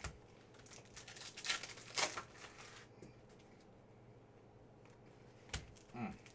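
Hands handling trading cards and foil card packs: a sharp click at the start, crinkly rustling for about two seconds, then a quiet stretch and another sharp click near the end.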